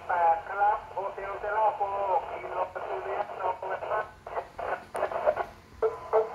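A person's voice received over a 2-metre FM amateur transceiver's loudspeaker, thin and narrow-band like radio speech, as another station transmits on the net. The talk breaks off briefly near the end.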